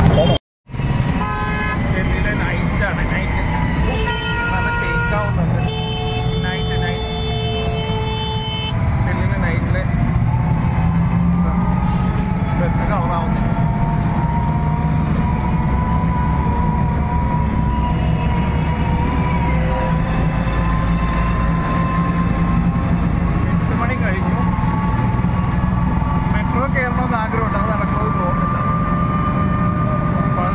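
Ride in an auto-rickshaw through traffic: steady engine and road rumble, with vehicle horns honking during the first several seconds. Later a steady whine slowly rises in pitch.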